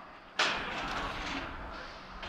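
A sudden burst of noise about half a second in, like a thump, trailing off into a hiss over the next second and a half.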